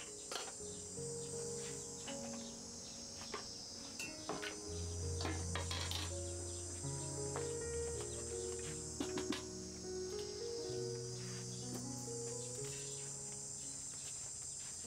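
A steady high insect drone over soft background music of slow sustained low notes, with a few sharp clinks of a utensil on a wok.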